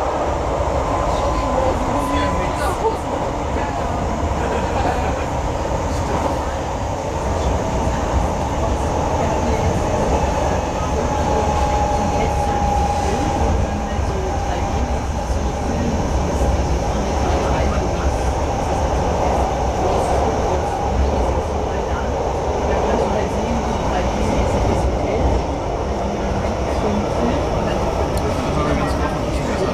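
Hamburg S-Bahn class 472 electric train heard from inside the carriage while running: a steady low rumble of the wheels on the track, with a faint whine that drifts slightly in pitch.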